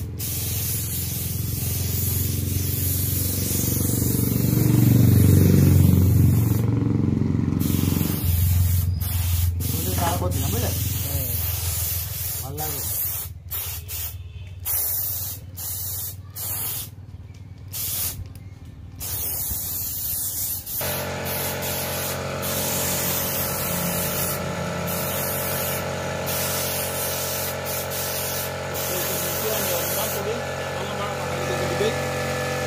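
Compressed-air spray gun hissing steadily as it sprays PU polish onto a carved wooden bed. The hiss cuts out briefly several times in the middle stretch, each time the trigger is let go.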